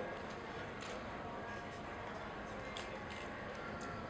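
Steady low room noise between answers, with faint background voices.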